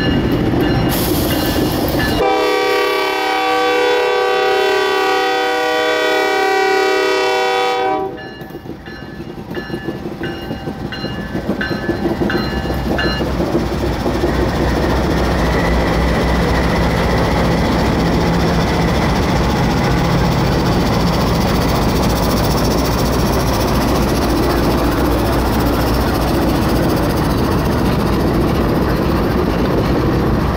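Norfolk Southern freight train's diesel locomotives passing close by; a locomotive horn sounds one long blast of about six seconds, a chord of several notes, that cuts off sharply. Afterwards the diesel engines and the wheels on the rails run on as a steady low rumble while the units and cars roll past.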